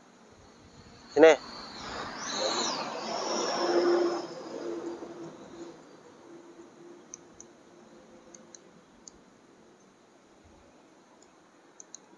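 Metal nail clipper snipping long fingernails: a few faint, sharp clicks spread through the second half. Before them, a loud short voiced sound about a second in, then a swell of noise with a high whine that rises and fades between about two and five seconds in.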